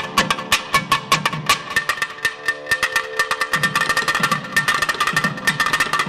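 Two thavil drums playing a fast, dense run of sharp strokes over a steady held drone note, in a Carnatic nadaswaram ensemble.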